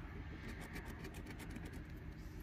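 Metal scratcher coin scraping the silver coating off a scratch-off lottery ticket: a quick run of faint, rapid scrapes starting about half a second in.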